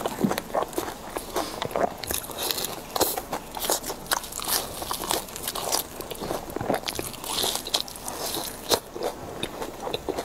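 Close-miked chewing and biting of crispy fried vegetable skewers, a dense run of irregular crunches throughout.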